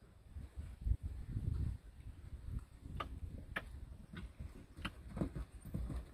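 Faint, muffled hoofbeats of a grey horse cantering on arena sand, heard as irregular low thuds, with a few sharp clicks in the middle of the stretch.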